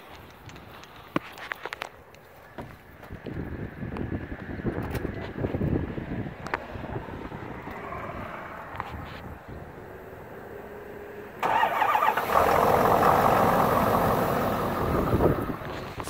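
Cold start of a 2012 Ford F-350's V8 engine: scattered clicks and rustling, then about eleven seconds in the engine cranks and catches at once, starting right up and settling into a steady idle.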